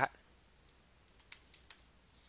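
A few faint, short computer clicks, spaced irregularly, as the on-screen writing is cleared.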